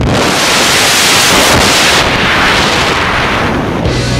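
Loud rushing wind over a hand-mounted camera's microphone as a tandem skydiving pair leaves the aircraft door and drops into freefall. A steady wall of noise that starts suddenly and cuts off at the end.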